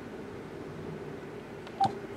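Steady low hum, with one short beep-like blip near the end.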